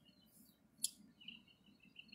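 Faint, scattered bird chirps over quiet outdoor ambience, with one short click a little under a second in.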